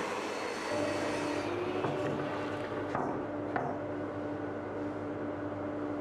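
Table saw running with a steady motor hum and whine while cutting boards to width, with a couple of faint clicks about halfway through.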